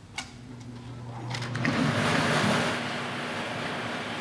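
Air-blower lottery ball machine switched on: a click, then its motor hum and air rush build over about two seconds and settle into a steady whoosh.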